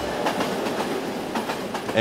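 A train rolling along the rails, a steady noisy rush with the clatter of wheels over the track.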